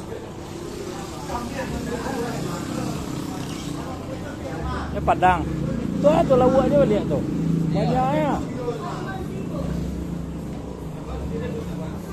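Open fish-market hall: people's voices talking and calling out around the market, loudest through the middle, over a steady low vehicle engine rumble.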